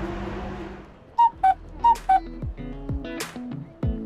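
A steady background hiss fades out. Then a bright two-note chime sounds twice, high then low. About halfway through, background music with plucked guitar and a kick drum begins.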